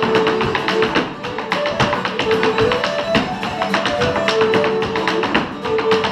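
Irish step dancer's hard shoes beating rapid taps on a wooden floor, in time with a live traditional tune played on fiddle and guitar.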